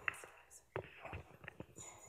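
Faint, indistinct talking among several people after a meeting has broken up, with a few light clicks and knocks.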